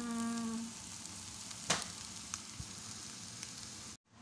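Bitter gourd, egg and dried shrimp sizzling steadily as they stir-fry in a frying pan, with one sharp knock a little under two seconds in. The sound cuts off suddenly at the end.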